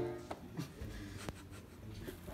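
A diatonic button accordion's chord breaks off, leaving a pause filled with a few faint clicks and light rubbing as its buttons and bellows are handled.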